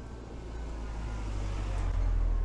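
A box truck driving past at close range, its low engine rumble growing louder as it approaches.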